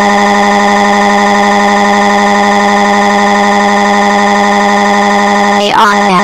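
A loud crying wail held on one unchanging pitch, machine-made rather than a natural cry, for a cartoon child's sobbing. Near the end it breaks into a few quick sliding cries.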